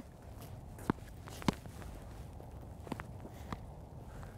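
A few sharp knocks of a solid Spec Tennis paddle striking a tennis ball and the ball bouncing on a hard court, the loudest about a second and a half in, with light shuffling footsteps between them.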